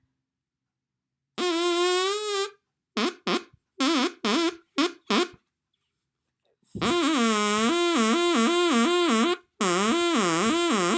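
A plastic drinking straw with its end cut to a point, blown like an oboe's double reed, giving a buzzy, reedy tone. First one long note, then a string of short toots, then a long stretch near the end where the pitch warbles quickly up and down between a low and a higher note.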